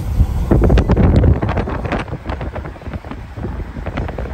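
Wind buffeting the microphone through an open car window, a loud low rumble with irregular knocks, strongest in the first second and a half, mixed with the running noise of a container freight train alongside.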